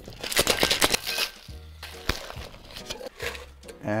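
Ice rattling hard inside a metal cocktail shaker as it is shaken, a fast dense clatter for about a second, then a sharp click about two seconds in.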